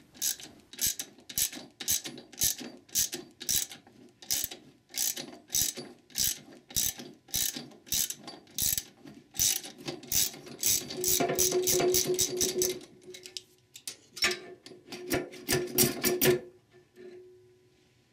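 Socket ratchet turning the jammed nuts on the threaded rod of a pump puller, its pawl clicking about twice a second at first. After that comes a faster run of clicks with a ringing metallic note, a short pause, then a last few quick clicks. This is the stage where the front pump of a Ford E4OD/4R100 transmission is being drawn free of the case.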